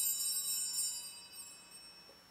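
Altar bells jingling and ringing on, dying away over the last second: the bells rung at Benediction as the priest blesses the people with the monstrance.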